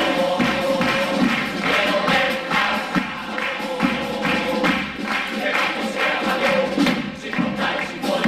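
A chirigota, a Cádiz carnival group of male voices, singing together to guitar with a steady percussion beat.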